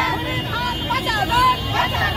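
A crowd of women shouting slogans as they march, many voices overlapping, over a low rumble of street traffic.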